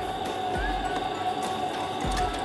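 Electrolux planetary stand mixer running steadily at medium speed as it kneads a stiff dough, a steady motor hum under soft background music.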